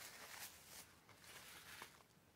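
Near silence, with a faint soft rustle in the first half second as a paper napkin is wiped across the mouth.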